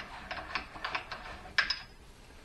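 Handwheel of a drill-press mill conversion's cross-slide table being cranked, its lead screw driving the table along: a run of irregular light clicks and ticks, with one sharper click about one and a half seconds in.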